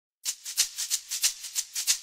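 Intro music made of a shaker playing a quick, steady rhythm of rattling strokes, starting a moment in.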